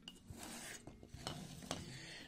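Faint handling noises: a primed 3D-printed PLA part being picked up off a cutting mat, with a few small clicks and light rubbing.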